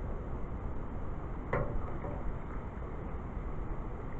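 Steady outdoor background noise, with one brief knock about one and a half seconds in.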